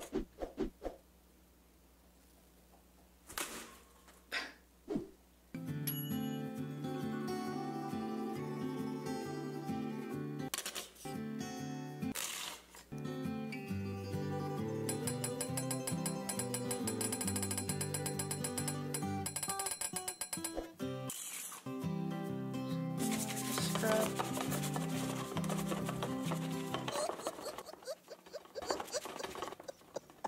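Upbeat instrumental background music starts about six seconds in and is broken by a few brief gaps. Before it come a few quiet seconds with a handful of sharp knocks and clicks. Late on, a few seconds of loud hissing noise lie over the music.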